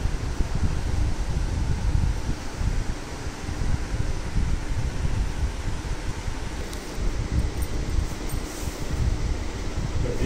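Moving air buffeting the microphone, a low, uneven rumble, over a faint steady hum. A few faint ticks come near the end.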